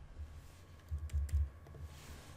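Soft clicks from a computer mouse and keyboard, a few of them about a second in, over low thuds.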